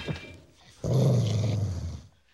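A Rottweiler growling low and steadily for about a second, starting a little before halfway through, after the fading tail of a loud, noisy burst at the very start.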